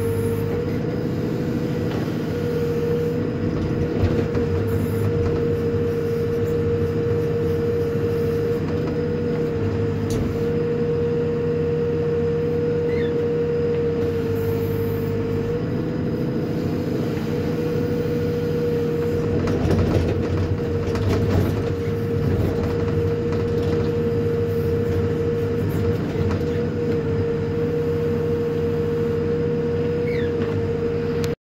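Hidromek HMK 102S backhoe loader running steadily while the backhoe arm digs, heard from inside the cab: low diesel engine drone with a strong steady whine over it. A few knocks come about twenty seconds in.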